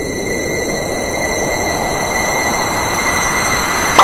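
Electronic noise riser in the soundtrack of an outfit-change transition: a hissing swell with thin steady high whistling tones, growing louder and brighter, then cutting off suddenly at the end as the outfit switches.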